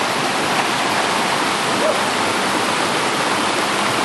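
Mountain stream rushing over boulders in white-water rapids, a steady, even rush of water.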